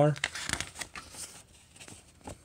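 Paper pages of an old magazine being riffled and turned by hand: a dry rustling crinkle for about a second that fades away.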